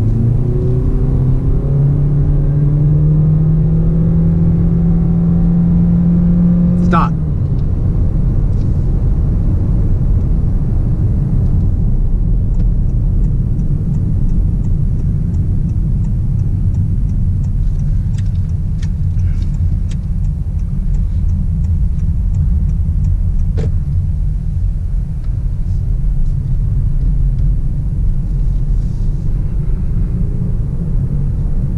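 Honda Clarity accelerating hard from a stop in electric (EV) mode, Normal drive setting, heard from inside the cabin. A rising electric whine climbs for about seven seconds and then cuts off suddenly, leaving steady road and wind noise as the car cruises.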